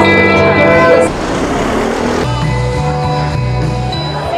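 Live rock band with electric guitars and bass playing a loud held chord. About a second in it drops to a quieter run of sustained notes.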